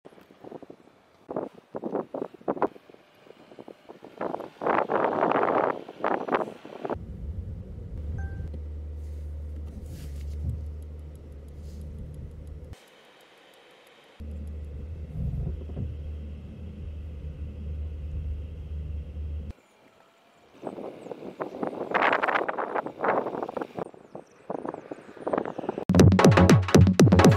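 A car's steady low rumble as it moves at parking speed under automated parking, in two stretches that cut off abruptly. Irregular rustling noise comes before and after them.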